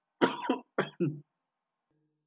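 A person coughing: four coughs in quick succession within the first second or so.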